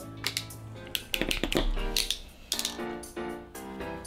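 Background music with piano-like notes, over sharp clicks and a louder clatter in the middle from a hand wire tool working on a car stereo wiring harness.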